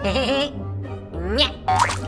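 Children's cartoon background music under comic sound effects: a wavering, warbling tone in the first half-second, then rising squeaky pitch glides about a second in and again near the end.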